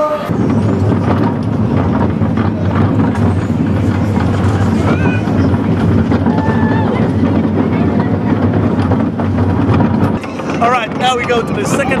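Vekoma junior roller coaster train running on its steel track, heard from on board: a steady low rumble of the wheels that eases off about ten seconds in.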